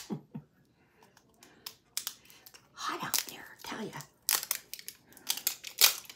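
Crinkling plastic packaging and a run of short, sharp clicks as a small packaged car air freshener is handled and picked at to open it.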